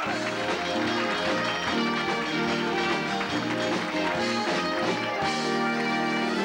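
Instrumental stage-show music: the band holds sustained chords over a bass line that moves in steps, then shifts to a new chord about five seconds in.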